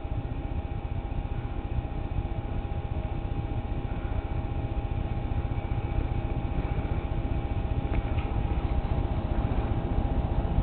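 Domestic cat purring steadily while being scratched under the chin, with a faint steady hum underneath.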